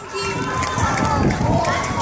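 A crowd of voices talking and calling out over one another, with a low rumble underneath.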